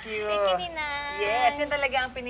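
A person's voice, drawn out and sliding up and down in pitch without clear words.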